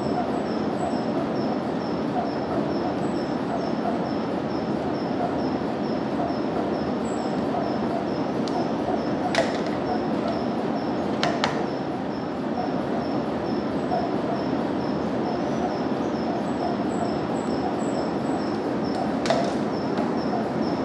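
Steady blower noise of a laminar flow cabinet running. Sharp clicks of lab ware being handled come about nine seconds in, again about two seconds later, and near the end.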